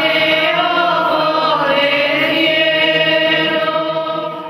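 Choir singing a slow devotional song in long, held notes.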